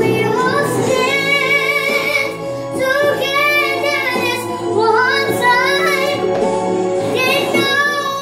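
A high singing voice carrying a melody over steady instrumental accompaniment.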